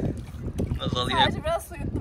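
A woman laughing in bursts about halfway through, over a steady low wind rumble on the microphone.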